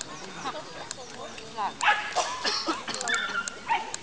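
Dog barking and yipping in short repeated calls, the loudest about two seconds in, with voices in the background.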